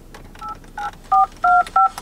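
Touch-tone telephone keypad dialing a number: five short dual-tone beeps in quick, uneven succession, each pair at a different pitch.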